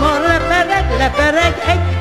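Instrumental passage of Hungarian magyarnóta band music: a lead melody with sliding, ornamented notes over a steady bass beat about twice a second.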